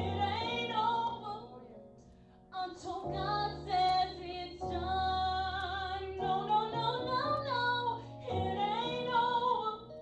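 A woman singing a worship song solo into a microphone, in long gliding phrases over held low accompaniment chords, with a short pause between phrases about two seconds in.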